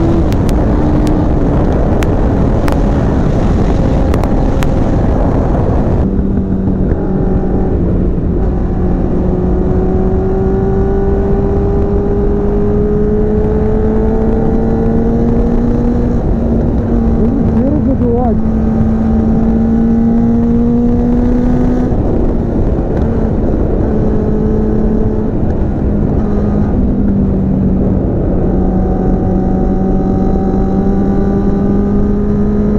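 Sport motorcycle's engine running at a steady cruising speed, its pitch drifting slowly up and down, under heavy wind rumble on the rider's camera microphone.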